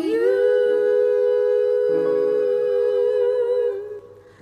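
Two women singing a duet, holding one long note; a lower note joins about halfway and the singing fades out near the end.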